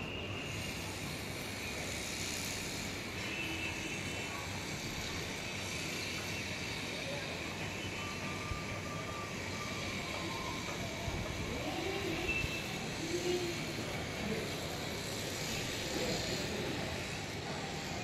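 Steady outdoor background noise, a continuous hiss and rumble typical of distant city traffic, with faint short chirps and distant voices now and then, a little louder in the second half.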